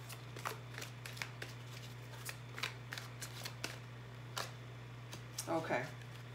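A deck of angel oracle cards being shuffled by hand: an irregular run of quick, sharp card snaps and clicks over a low, steady hum.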